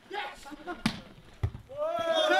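Two smacks of a volleyball in play, about half a second apart, the first sharp and the loudest sound here, the second a duller thud. Men's voices talk before them, and a shout rises near the end.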